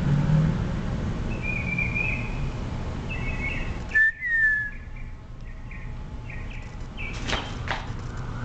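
Birds chirping: short high whistled notes, a louder falling whistle about halfway through, then a quick run of short repeated chirps, over a steady low background rumble that drops abruptly about halfway through.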